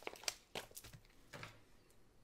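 Paper planner sticker being peeled from its sheet and pressed onto the planner page: faint, short crinkles of paper, several in the first second and one more about a second and a half in.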